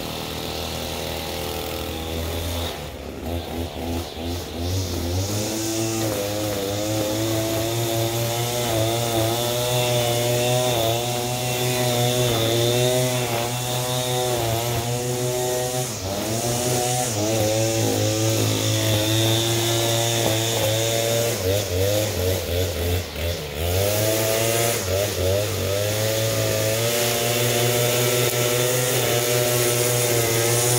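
Two-stroke string trimmer running at high revs while cutting grass, its engine pitch dipping and picking up again several times as the line bites into the turf.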